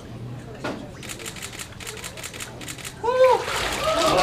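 Water splashing and sloshing in a baptismal immersion tank as a person is lowered into it. About three seconds in, a loud voice rises and falls briefly.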